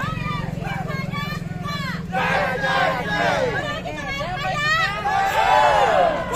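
Many overlapping voices of a marching crowd and onlookers calling and shouting, rising louder about two seconds in and again near the end, over a steady low engine hum.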